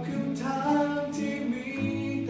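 Acoustic guitar played fingerstyle, picking a melody over held bass notes, with a voice singing the tune along with it.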